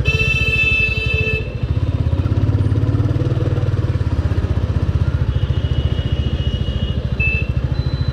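Royal Enfield Classic 350 single-cylinder engine thumping steadily while riding in traffic. A horn sounds for about a second and a half at the start, and fainter, shorter horn tones come near the end.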